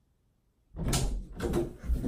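Silence, then about three-quarters of a second in a sudden loud run of knocks, bumps and rustling as a person moves about hurriedly.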